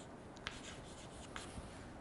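Chalk writing on a chalkboard: faint short scratches and a couple of small taps as a few quick strokes go down.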